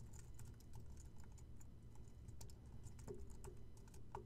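Faint typing on a computer keyboard: a scatter of light, irregular key clicks.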